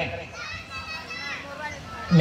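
Faint, high children's voices chattering and calling in the background for about a second.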